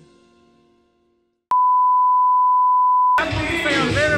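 Music fading out into silence, then a loud, steady single electronic beep like a test tone, held for under two seconds and cut off sharply as music and voices begin.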